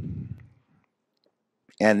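A short low, muffled rumble on the lectern microphone in the first half second, then a few faint clicks during a pause in a talk; a man's voice starts speaking near the end.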